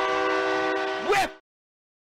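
Arena goal horn sounding a steady chord of several held tones, signalling a goal, with a short rising-and-falling wail about a second in. It cuts off abruptly about a second and a half in.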